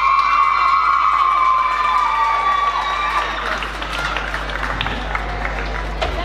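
The last long note of the dance music, held for about three seconds, then audience applause and cheering.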